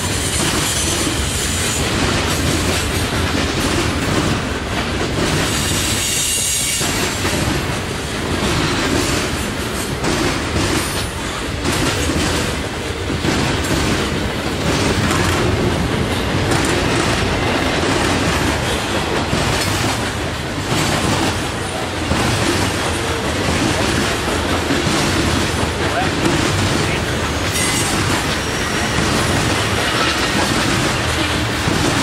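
Freight cars rolling past close by: a steady rumble of steel wheels on rail with a clickety-clack of wheels over rail joints, and a brief high-pitched wheel squeal about six seconds in.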